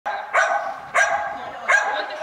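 A dog barks three times, with each bark ringing on in the echo of a large indoor hall.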